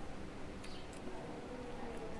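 Faint chewing of a mouthful of food over a low background, with a couple of short, faint high chirps.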